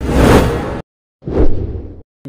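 Two whoosh sound effects from a TV news channel's animated ident. The first lasts under a second. The second comes a little past a second in, peaks quickly and fades away.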